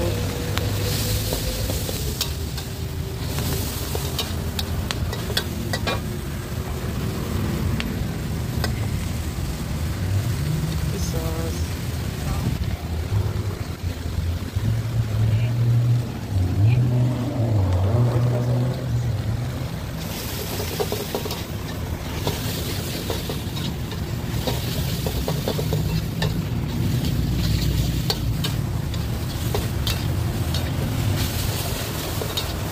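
Instant noodles and vegetables being stir-fried in a steel wok: a metal spatula scrapes and clanks against the wok again and again over a continuous sizzle, with a steady low rumble underneath.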